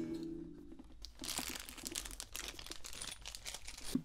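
Handling noise from a carbon fiber acoustic guitar as its neck is seated in the body slot. The loose strings ring and fade in the first second, then a run of small clicks and rubbing follows.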